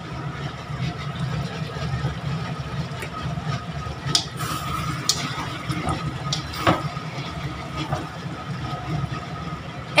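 Mutton curry cooking in a steel wok on a gas stove: a steady hum and hiss runs throughout, with a few sharp clinks as a metal spatula stirs the pan.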